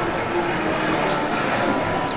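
Steady background noise of a bar room, an even murmur with no distinct events.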